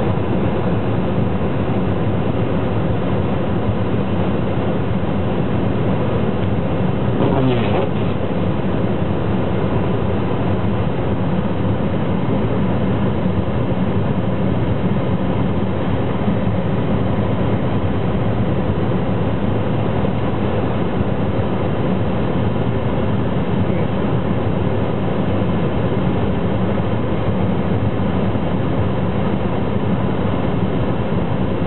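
Steady in-car running noise from a car driving on snow-covered streets: engine and tyre drone heard from inside the cabin.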